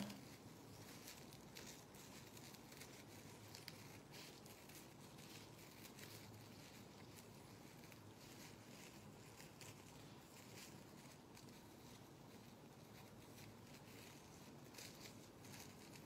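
Faint scissors snipping through a folded thin plastic trash bag liner, with scattered soft clicks and plastic rustle.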